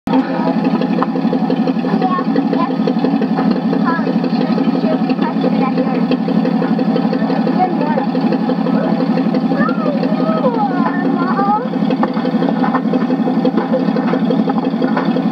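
Tractor engine running steadily under load with a fast, even chug, and people's voices and a laugh over it.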